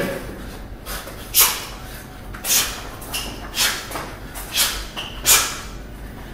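A boxer's sharp hissing exhales, about one a second, as he throws punches and slips, ducks and turns under a swinging slip bag.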